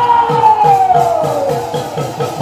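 Bhaona accompaniment music: khol drums beating about four strokes a second under one long, falling high tone, with a steady lower tone held beneath.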